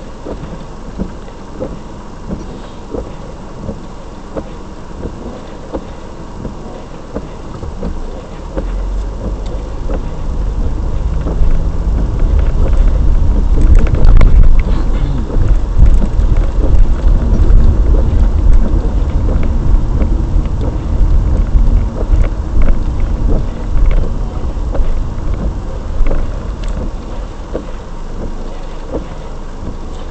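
Car cabin as picked up by a dash cam: a low road and engine rumble. It is quiet at first with faint regular ticking, swells as the car pulls away about eight seconds in, is loudest midway, then slowly eases.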